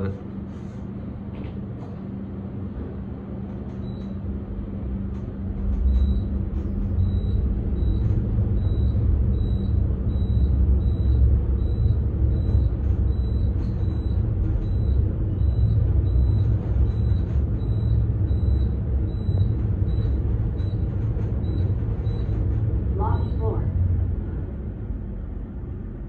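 Ride noise inside a Kone ReVolution-modernized Otis traction elevator car descending at high speed (rated 900 ft/min). A low rumble builds over the first several seconds, holds steady, then eases near the end as the car slows for the lobby. Throughout the run a short high electronic floor-passing beep repeats in quick succession, about one and a half times a second, as floors go by.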